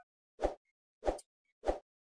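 Three short pop sound effects, evenly spaced a little over half a second apart, with silence between them.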